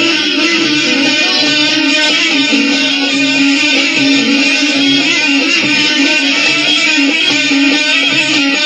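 Music: a plucked guitar playing continuously and steadily, with no pause.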